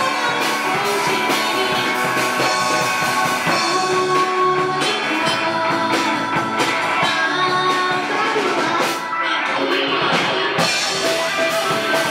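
Live city pop band playing a song: electric guitar, drum kit and keyboard, with a woman singing into a handheld microphone. The music dips briefly about nine seconds in, then carries on.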